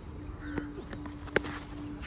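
Cricket bat striking the ball once, a single sharp crack about a second and a half in, as the batsman lofts the ball high. A faint steady hum runs underneath.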